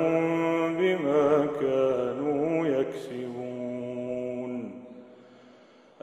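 A man chanting Quran recitation in the melodic tajweed style, drawing out long held notes with ornamented turns as he closes a verse. His voice fades out about five seconds in, leaving a brief, nearly silent pause for breath.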